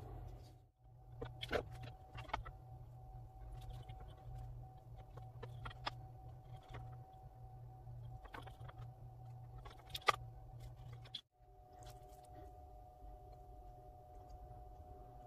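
Light, scattered clicks and taps of a clear Lexan polycarbonate sheet and a metal blade being handled and worked, over a steady low hum. The hum cuts out briefly about a second in and again near the end.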